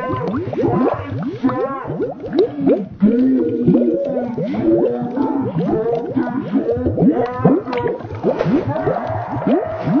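A boy's angry shouting and screaming, slowed right down and warped by a watery audio effect into a continuous mass of warbling, gliding pitches.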